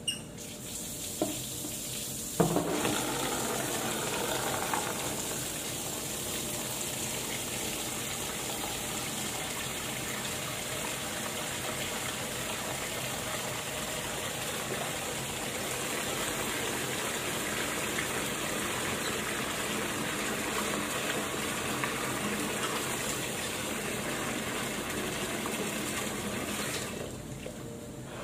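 Tap water running into a plastic washbasin: a steady gush that swells to full flow about two seconds in and is shut off near the end, with a couple of small knocks early on.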